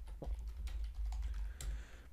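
Typing on a computer keyboard: a quick run of keystroke clicks, several a second, as a line of code is typed.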